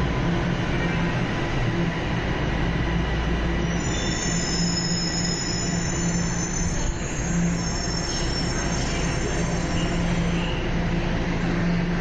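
Line 1 subway train in the underground station, with a steady rumble and hum. From about four seconds in, a high-pitched squeal of several tones joins it and fades out near the ten-second mark.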